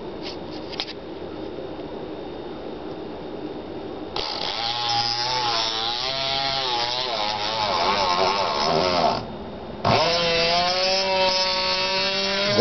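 Small battery-driven DC motor spinning up about four seconds in and running with a high, buzzing whine that wavers in pitch. It cuts out briefly near the nine-second mark, then starts again and runs on with a steadier pitch.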